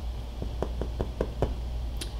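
Fingers tapping on a countertop in a quick, even rhythm, about five light taps a second.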